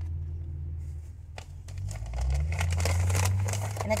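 Plastic-wrapped package and a padded paper mailer crinkling and rustling as they are handled, most in the second half, over a steady low rumble.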